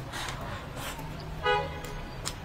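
Close-up wet eating sounds, sucking and chewing on braised pig's trotters, with a brief high pitched toot about one and a half seconds in that is the loudest sound.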